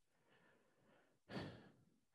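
Near silence, broken about one and a half seconds in by a single short breath or sigh picked up close on a headset microphone.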